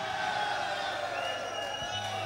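Concert crowd cheering and shouting just after a heavy metal song ends, with a long, steady high tone rising over the noise about a second in.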